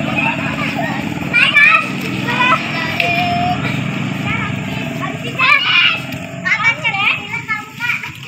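Children's voices: scattered chatter and short calls from a group of kids, over a steady low hum.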